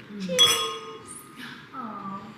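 Stemmed wine glasses clinking together in a toast: one bright ringing chime about half a second in that fades over about a second.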